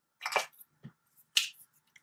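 Three short, sharp clicks and taps about half a second apart as a marker is handled and brought down onto graph paper.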